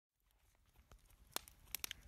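Near silence broken by a few faint, sharp clicks in the second half.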